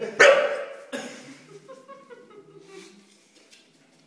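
A bulldog barks: one loud bark just after the start, then a second, weaker one about a second in.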